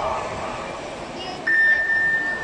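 Electronic starting signal of a swimming race: one steady, high beep that starts abruptly about one and a half seconds in, the signal for the swimmers to dive off the blocks.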